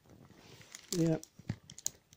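A plastic snack multipack wrapper being handled and crinkled, faint at first and then a few sharp crackles in the second half.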